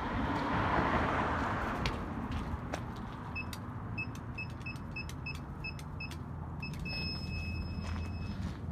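Storage-facility gate keypad beeping as a code is punched in: about a dozen short high beeps, then one long beep of about a second near the end, the keypad accepting the code.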